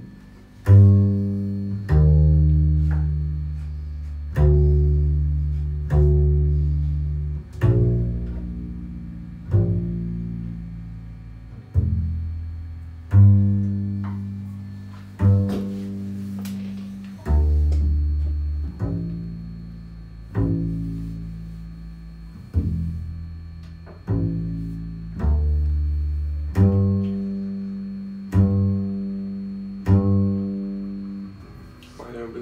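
Upright double bass plucked pizzicato in a slow rhythm, a deep note every one to two seconds, each note starting with a sharp percussive click. The clicks come from a brush pad, a sandblasted-hide percussion skin mounted on the bass body.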